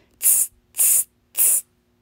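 A woman voicing the monkeys' "tsz, tsz, tsz": three short hissing "tss" sounds made through the teeth, evenly spaced about half a second apart.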